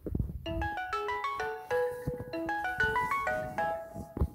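Phone alarm ringing: a quick melodic tune of single notes stepping up and down, stopping just before the end. A few low thumps are heard under it.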